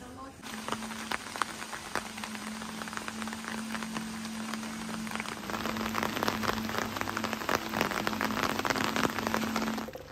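Rain pattering steadily in dense fine drops, heavier in the second half, over a low steady hum.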